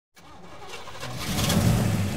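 An engine starting and revving up, growing steadily louder.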